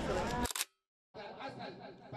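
Crowd chatter cut off by a sharp camera-shutter click about half a second in, then a moment of dead silence before a quieter murmur of voices returns.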